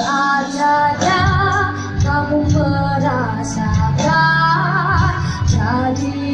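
A child singing held notes with vibrato over backing music.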